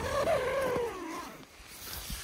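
Tent door zipper being pulled open: a buzzing zip that sinks in pitch as the pull slows, lasting about a second and a half.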